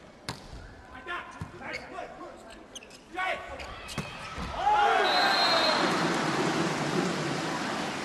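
A volleyball struck a few times in a rally, sharp separate smacks from the serve onward, then a large arena crowd breaking into loud cheering and shouting about four and a half seconds in.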